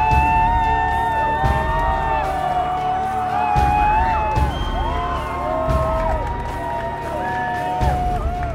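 Background music: held melodic lines that slide between notes over a heavy, steady bass.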